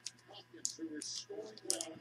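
Thin plastic penny sleeve crinkling and clicking against the edges of a thick trading card as it is pushed in, a few short faint ticks; the card is too thick to fit.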